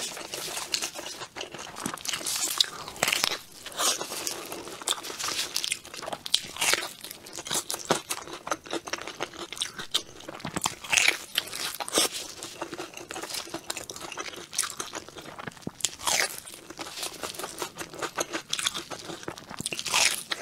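Close-miked eating: crunchy bites and chewing of a sesame-crusted bun topped with a crisp biscuit, in irregular crunches throughout.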